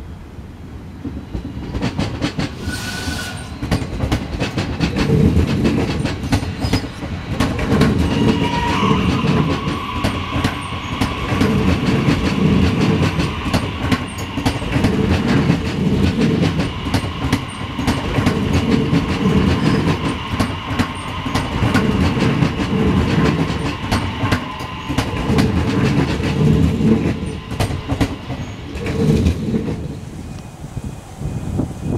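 HCMT (High Capacity Metro Train) electric suburban train passing close by: its wheels clatter over the rail joints in a steady repeating rhythm with many sharp clicks, and a steady high whine runs through most of the pass.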